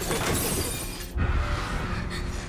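Film sound effect of glass shattering in a loud, dense crash that cuts off about a second in, followed by a short low thud, under a horror film score.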